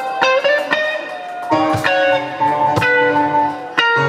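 Live band playing an instrumental stretch between sung lines, led by an electric guitar picking a run of single notes that step up and down over the band.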